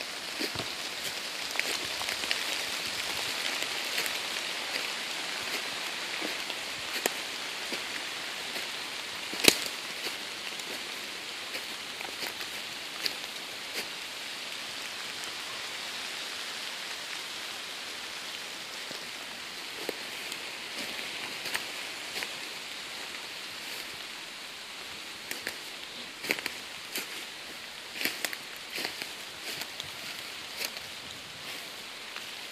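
Steady hiss of rain falling on the forest leaves, with scattered sharp clicks and drips and one louder snap about nine seconds in; near the end a few more crackles come close together.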